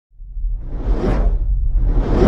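Cinematic logo-reveal whoosh sound effects over a deep low rumble: one whoosh swells up from silence and peaks about a second in, and a second begins to build near the end.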